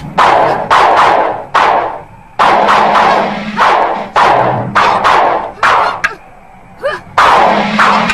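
Dubbed fight sound effects: a rapid series of about a dozen sharp whooshes and strikes, each with a short ringing tail, coming every half second or so, with a brief pause about six seconds in.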